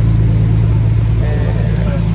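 A steady, loud, low engine drone, as of a vaporetto water bus idling at its landing, with faint voices over it in the second half.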